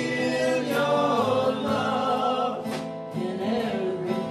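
Live song: male voices singing together over an acoustic guitar.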